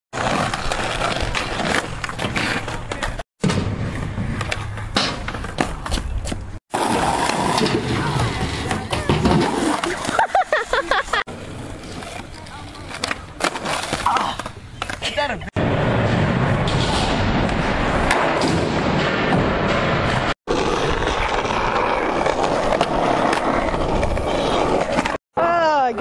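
Skateboard wheels rolling on asphalt, with boards clacking and slapping the ground as tricks are bailed, heard in several short clips joined by abrupt cuts. Voices of the skaters come and go over it.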